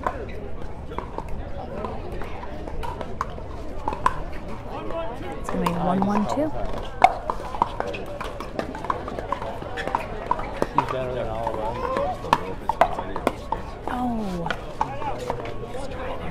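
Pickleball paddles hitting the plastic ball during a rally: a series of sharp pops at irregular intervals, the loudest about seven seconds in, with voices murmuring in the background.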